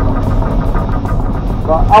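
Excavator's diesel engine running steadily, a low drone heard from inside the cab.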